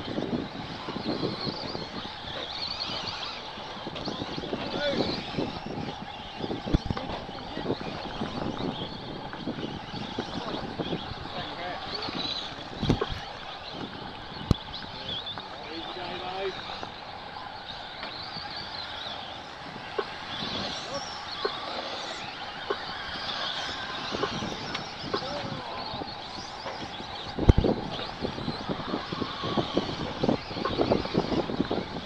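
Electric RC stadium trucks racing on a dirt track: high motor whines rising and falling as they speed past, over a steady rushing noise, with a few sharp knocks, the loudest near the end.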